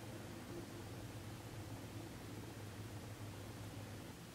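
Quiet room tone: a faint steady hiss with a low hum underneath, and no distinct events.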